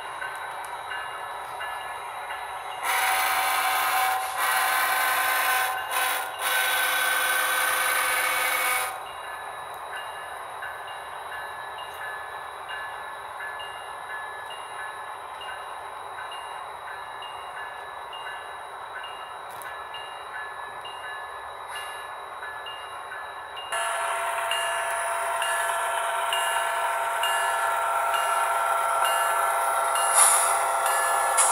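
Model railroad freight train running past on the layout with a steady mechanical running sound. Three louder chime-like blasts sound from about three to nine seconds in, and a louder steady multi-tone sound comes in near the end.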